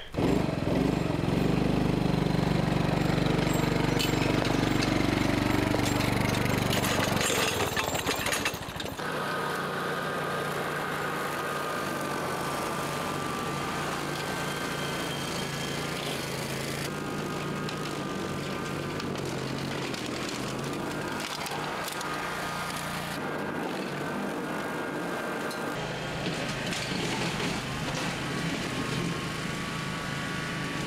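Ride-on lawn mower engine running while cutting long grass: loud and deep for the first eight seconds or so, then a steady drone with a faint whine.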